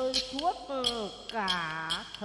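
Xẩm folk music between sung lines: a two-string fiddle (đàn nhị) plays a sliding, bending melody over sharp clapper clicks that keep a beat two to three times a second.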